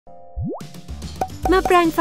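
Cartoon sound effect: one quick rising swoop-pop about half a second in, over light children's background music with a beat.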